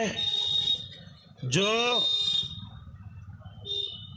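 A man's voice through a public-address loudspeaker, saying one word in Urdu about a second and a half in. A thin, steady high-pitched whine hangs in the pauses on either side of the word.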